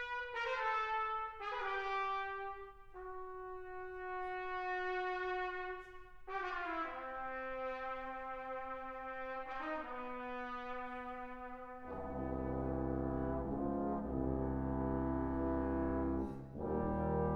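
Brass octet playing a slow passage: a few sustained brass notes change every second or two. About twelve seconds in, the tuba and trombones enter and the full ensemble plays louder, fuller chords.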